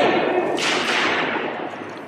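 A small hammer strikes the protective glass over a painting once, about half a second in, a sharp hit that rings on in a large hall. Under it runs a steady noisy background that slowly fades.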